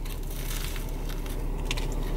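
Biting into and chewing a croissant breakfast sandwich: a few soft crunches of the pastry, over a steady low hum.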